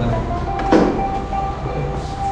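A box set down into a scooter's plastic under-seat storage compartment with a single short knock, over a steady low hum.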